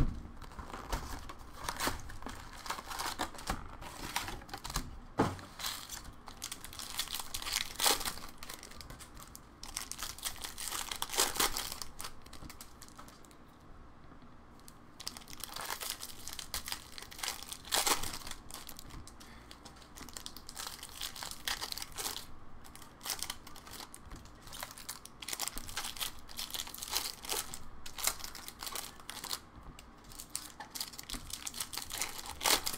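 Topps Chrome baseball card pack wrappers crinkling and tearing, with stiff cards clicking and sliding against each other as stacks are flipped through by hand in irregular bursts.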